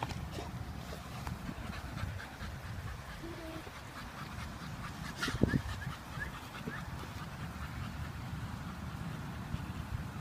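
A dog panting and whimpering, with a brief louder sound about five and a half seconds in.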